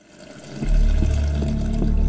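Water pouring in a steady stream into a plastic shaker bottle. About half a second in, music with a deep bass and a regular beat comes in over it.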